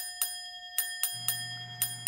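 Edited-in ticking sound effect: sharp ticks about four a second over a steady ringing tone, with a low hum coming in about halfway through.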